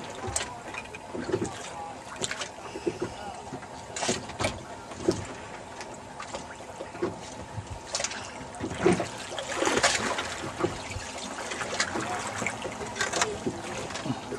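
Water lapping and slapping around a small boat's hull, in irregular short splashes, with a longer wash of splashing about ten seconds in.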